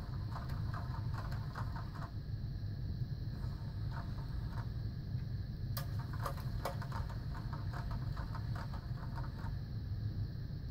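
Battery-powered pop-up cat toy running: a steady low motor drone with runs of rapid mechanical clicking as its bird-tipped wand moves between the holes, and one sharper knock a little past the middle.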